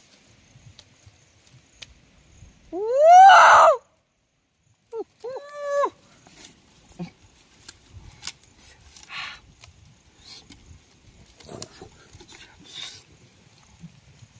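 A man's loud wordless 'ooh' call, rising then falling in pitch, about three seconds in, followed by two shorter, steadier calls about five seconds in. After that, faint scattered rustling and small knocks of twigs and leaves being handled at the nest.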